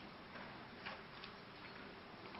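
Faint room tone with a few soft, short clicks.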